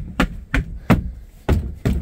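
Footsteps thudding on a fiberglass boat floor: five sharp thuds about a third of a second apart, with a short gap in the middle, as the floor is stepped on and tested for soft spots.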